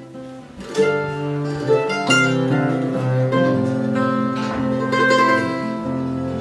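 Acoustic string trio of guitar, upright bass and mandolin playing an instrumental folk intro, with strummed chords over held bass notes. The playing comes in much fuller and louder a little under a second in.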